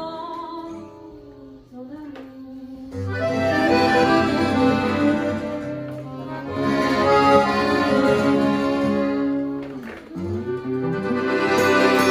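Live acoustic band music led by a piano accordion playing held chords. It starts soft, fills out from about three seconds in, and dips briefly near ten seconds.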